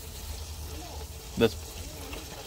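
Old gasoline draining in a thin, steady stream from the bottom of a motorhome's fuel tank and splashing into a drain pan below, an even, continuous pouring sound.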